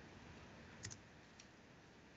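Near silence, with a faint computer-mouse click, doubled, a little under a second in and a fainter click about half a second later, as the presentation moves to the next slide.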